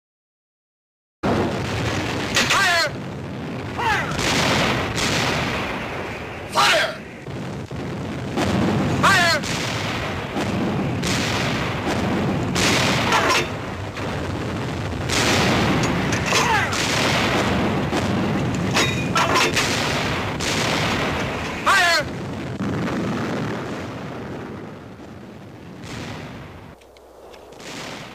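Artillery barrage on a film soundtrack: heavy gun booms and shell blasts one after another, with shells whistling in at falling pitch, starting abruptly about a second in and easing off near the end.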